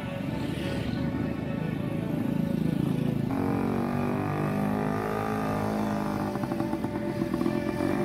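Background music with sustained notes that change about three seconds in, over motorcycles passing on the road.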